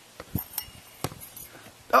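A tetherball being played: several sharp knocks and clinks in the first second or so as the ball is hit and the ball and rope strike the pole.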